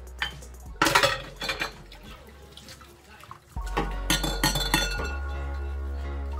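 Washing up in a kitchen sink: a metal pot and dishes clatter and knock with water splashing, the loudest clatters in the first two seconds. Background music comes in louder about halfway through.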